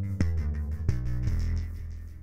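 Electronic beat playing back from FL Studio Mobile: sustained deep bass notes and drum hits in a steady rhythm. The bass channel runs through the Spacer plugin with its mid/side inversion set to invert the side signal's phase.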